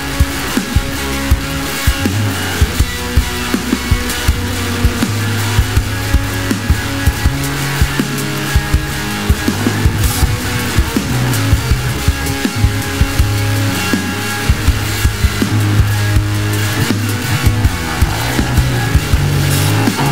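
Instrumental passage of a stoner rock song: guitar, bass and drums with a steady beat, the bass holding low notes that change every second or two.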